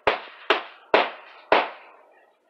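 Hammer driving a nail into the roof edge of a wooden chicken coop: four sharp strikes about half a second apart, the final nail being driven home.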